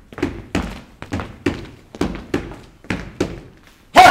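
Long wooden oar poles knocked against a wooden stage floor in a steady rhythm, about three hollow knocks a second.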